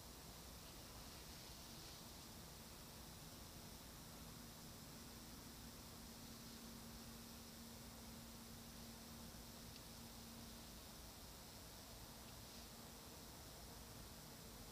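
Near silence: a faint steady hiss, with a faint low steady hum from about three seconds in until about eleven seconds in.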